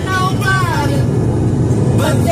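Steady low road rumble inside a moving car's cabin, with a woman's voice singing a short phrase in the first part that stops a little under a second in.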